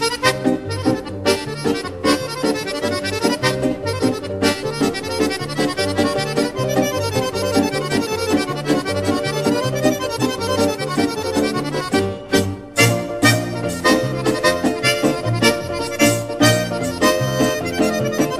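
Instrumental background music with a steady beat and a repeating bass line, led by a reedy melody instrument.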